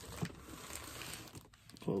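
A large cardboard box being shifted across a surface, with a rustling scrape that lasts about a second and a half.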